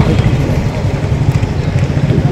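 A vehicle engine running steadily, a low even hum under outdoor background noise.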